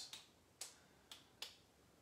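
Near silence with three faint, sharp clicks spaced about half a second apart in the first second and a half.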